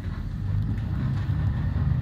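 Steady low rumble of a bus, heard from inside the passenger cabin.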